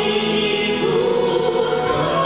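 Large mixed choir singing in harmony, on long held notes that change to a new chord about a second in.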